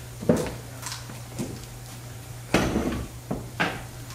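A handful of short knocks and clatters of objects being handled on a table, the loudest about two and a half seconds in, over a steady low hum.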